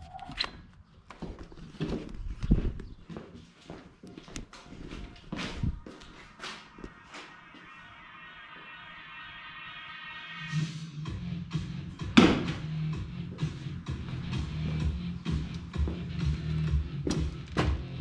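Background music with a steady beat, filling out about ten seconds in. Scattered light knocks and steps come before it. About two seconds later a single loud thunk marks a throwing hatchet striking the wooden end-grain target.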